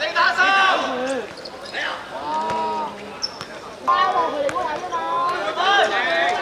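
Voices talking and calling out during play, with the thuds of a football being kicked and bouncing on a hard court.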